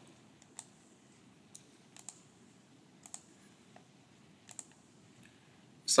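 Faint computer mouse clicks, about nine scattered through, several in quick pairs, over quiet room tone.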